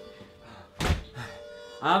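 A door shutting with a single dull thunk about a second in, as the tail of background music fades out.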